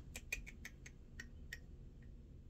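Long acrylic fingernails tapping: a run of light, irregular clicks, about eight in the first second and a half, then one or two more.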